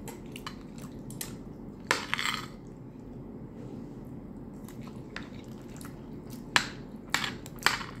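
Close-miked eating of rice and stew with a metal spoon: chewing and mouth sounds, with a few sharp clicks and scrapes of the spoon on the ceramic plate. The loudest click comes about two seconds in, followed by a brief rustling burst, and three more come close together near the end.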